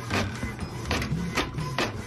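Canon inkjet printer printing a page, its print head shuttling back and forth in repeated strokes about two a second, with music playing underneath.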